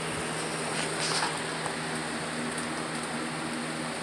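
Box fan running steadily: a constant hum and rush of air. A brief faint rustle about a second in.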